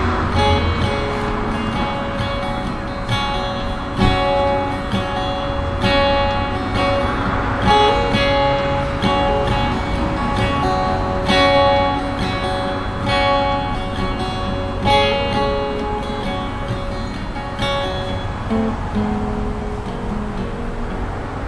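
Solo acoustic guitar played on its own without singing, strummed chords ringing over a steady, repeating rhythm.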